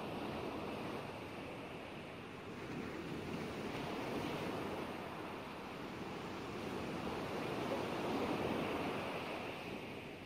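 Ocean waves washing: an even rush of surf that slowly swells and eases, with the biggest swell near the end.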